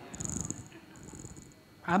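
A soft, low, throaty chuckle: quick rattling pulses for about half a second, fading out, before speech resumes.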